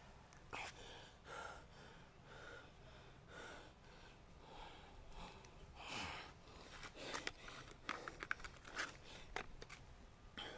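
Faint breathing and gasps. A quick run of small clicks and crackles follows in the last few seconds.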